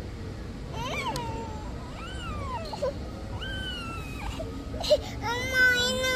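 A toddler crying in short, rising-and-falling wails, breaking into a louder, longer wavering cry near the end.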